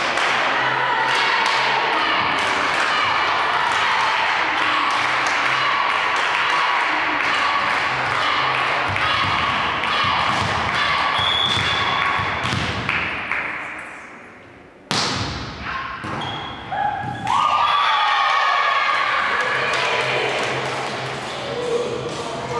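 Volleyball being struck and bouncing on a hard sports-hall floor, in among players' shouts and chatter that echo around the hall. The sound dips briefly about 14 seconds in and comes back with a sharp impact.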